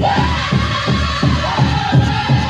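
Powwow drum group singing over a big drum struck in a steady beat, about three strokes a second, with a high, held vocal line entering at the start.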